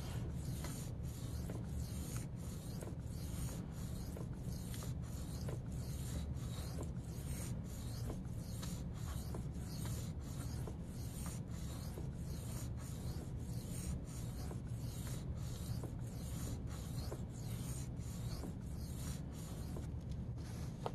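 Steel knife edge stroked back and forth by hand on a fine-grit Venev diamond sharpening stone, a steady rhythmic scraping at about two strokes a second. This is the last grit before polishing.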